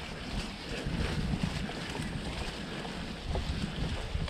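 YT Jeffsy mountain bike ridden up an overgrown grassy trail: tyre noise and long grass brushing against the bike and rider, with a few faint ticks from the bike, under low wind rumble on the camera microphone.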